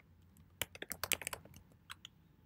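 Typing on a computer keyboard: a quick run of keystroke clicks a little past half a second in, then a single keystroke near the end, as a terminal command is entered.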